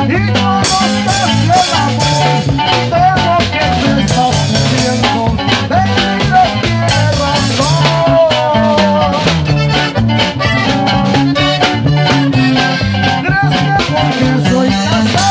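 Live norteño music: a button accordion and a bajo sexto over a stepping bass line and a steady beat, with a male lead voice singing at the microphone.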